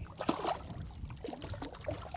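Water splashing as a hooked bass thrashes at the surface beside the boat and a hand reaches in to grab it: a sharp splash about a quarter second in, then lighter, irregular sloshing.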